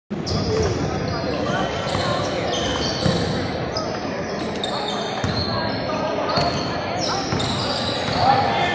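Basketball game on a hardwood court: the ball bouncing as it is dribbled, and sneakers squeaking briefly and often as players move, over a mix of voices.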